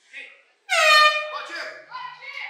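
Air horn blown once, a steady blast of about half a second, signalling the start of the grappling bout.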